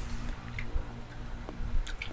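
A metal spoon lightly clicking against a plastic dessert cup, a few irregular ticks, over a steady low hum.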